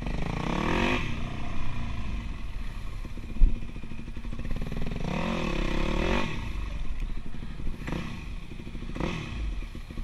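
Dirt bike engine running under the rider, its pitch rising and falling in several surges as the throttle is opened and closed. A single sharp knock stands out about three and a half seconds in.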